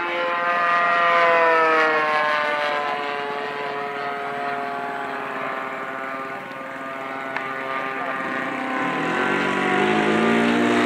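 Propeller engine of a radio-controlled model airplane flying past, its pitch falling over the first few seconds and then holding steady. Near the end, a second model plane's lower engine tone rises in.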